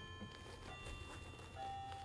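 Faint background music: a few soft, long held notes, a new lower one coming in near the end.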